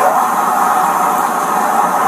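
A steady, even rushing drone with no distinct events, like a machine running nearby.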